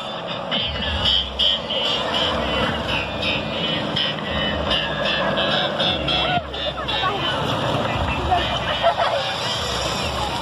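Music with a steady beat played loud over a party bus's sound system, mixed with the bus's engine and voices. The beat is clearest in the first half.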